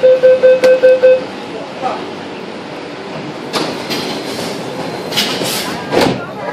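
Metro train door-closing warning beeps: a rapid, evenly pulsed series of loud beeps, about six a second, that stops about a second in. The train's steady running noise follows, with a few louder rushing bursts later on.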